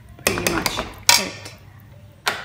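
Steel ladle scraping and clanking against a steel kadhai while a thick potato pickle mixture is stirred. There is a short scrape about a quarter second in and a sharper, louder clank about a second in.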